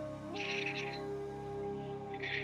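Slow ambient background music of sustained tones, moving to a higher chord about a third of a second in. Two short, higher, chirpy flurries sit over it, one early and one just at the end.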